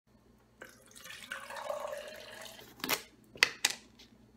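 Water poured from a bottle into a clear plastic shaker cup for about two seconds, followed by a knock and two sharp clicks.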